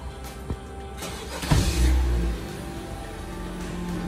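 A 2012 Honda Civic's engine starting about a second in, with a loud surge, then settling to idle, under background music.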